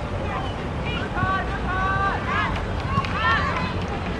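Several high-pitched shouted calls from voices on a football pitch, coming in short bursts through the second half, over steady outdoor wind noise.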